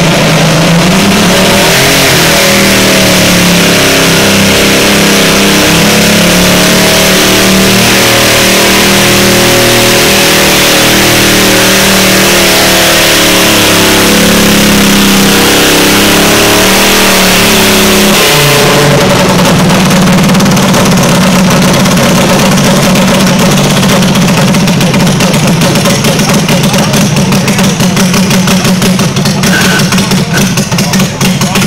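Garden tractor engine running loud at high revs under load, pulling a weight-transfer sled, its pitch wavering as it works. About two-thirds of the way in the revs drop sharply and the engine runs on at a lower, steady pitch as the pull ends.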